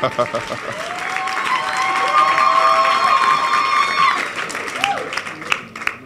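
Congregation clapping and cheering in response to a call to praise, with a held chord sounding over the clapping that stops about four seconds in.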